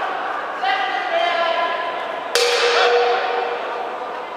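Men's loud shouts echoing in a large sports hall during an amateur boxing clinch. The loudest shout starts sharply about two and a half seconds in and is held for about a second.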